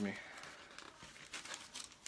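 Thin pages of a paper Bible being flipped and rustled, with a run of quick crinkly page turns in the second half.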